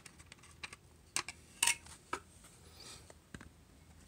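Light plastic clicks and taps from a plastic scale-model Ford Thunderbird being handled as its hood is worked off by hand. There are several sharp, separate clicks about half a second apart in the first half, then one more later.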